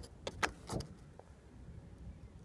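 Plastic covers of a pickup truck's trailer wiring connectors being handled and snapping shut: a few sharp clicks in the first second, the loudest about half a second in, over a low rumble.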